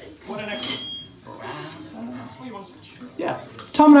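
Indistinct talking, with a few light clinks and knocks and a brief high ring about a second in.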